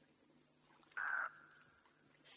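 A single short, harsh, bird-like call about a second in, with a brief fading tail, over a quiet background.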